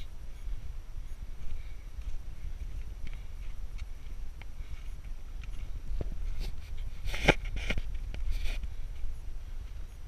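Footsteps on a rocky granite trail: irregular soft crunches and scuffs of boots on grit and stone, with a short run of louder scrapes and clicks about three-quarters of the way through, over a low steady rumble on the microphone.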